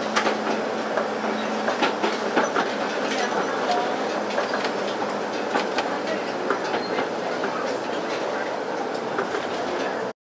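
Tram rolling along ballasted track: a steady running rumble with frequent irregular clicks from the wheels on the rails. A low steady hum fades out about two seconds in.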